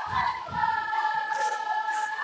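Voices in a gym holding one long sung or chanted note at several steady pitches, starting about half a second in, with a few low thuds near the start.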